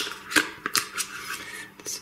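A metal teaspoon scraping and clicking against a plastic quark tub as the quark is scooped out into a bowl: several short, sharp scrapes and clicks.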